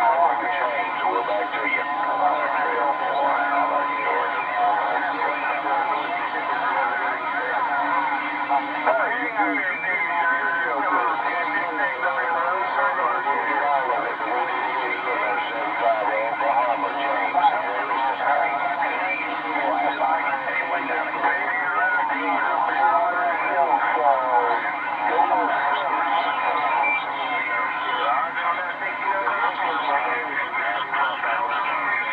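Uniden HR2510 10-metre transceiver's speaker playing several garbled, overlapping voices from distant stations over static, with a steady whistle running under them.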